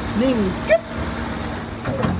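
Nissan Almera's small three-cylinder petrol engine idling quietly and evenly under an open hood, with a sharp knock near the end as the hood is brought down.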